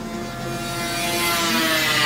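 Racing snowmobile engine at full throttle on an ice oval track, getting louder as the sled approaches and passes, with a slight drop in pitch near the end.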